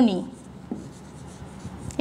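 Marker pen writing on a whiteboard: faint scratchy strokes and small taps of the tip as letters are formed.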